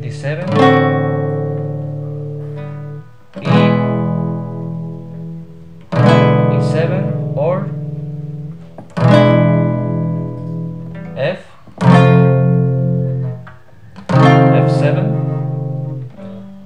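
Nylon-string classical guitar strummed one chord at a time, about every three seconds, each chord left to ring and die away. It steps through major chords and their dominant sevenths: D, D7, E, E7, F, F7.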